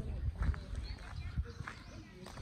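Footsteps of a person walking on gravel: a few short, irregular steps.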